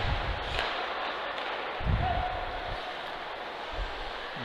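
Ice hockey rink ambience: a steady hiss of play on the ice, with a dull thump about two seconds in and a softer one near the end.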